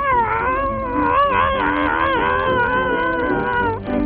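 A cartoon character's long, wavering vocal cry, held for nearly four seconds over background music, cutting off suddenly near the end.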